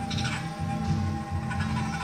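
Background music with an animal-like yowling sound effect, most likely from a Halloween animatronic creature prop.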